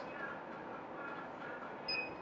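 Quiet room tone, then one short high-pitched beep near the end: the Multilaser Style head unit's touch-screen beep as a track is selected from the list.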